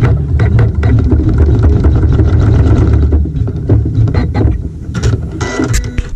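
Embroidery machine running, sewing short tack-down stitches through fabric in the hoop: a steady low hum with quick clicks from the needle throughout.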